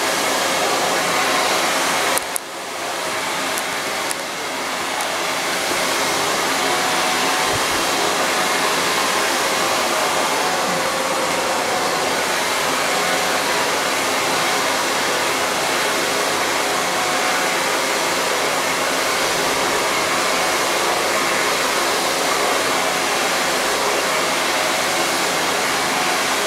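Silverbird handheld hair dryer blowing steadily on its highest speed with warm heat, a smooth rushing of air with two brief dips a few seconds in.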